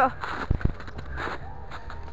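Two sharp knocks about half a second in, then a brief rustle: handling noise from a handheld camera carried through dry grass and snow.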